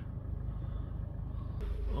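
Toyota Urban Cruiser's 1.4-litre diesel engine idling, a steady low hum with a fine even pulse, heard from inside the cabin. There is a light rustle near the end.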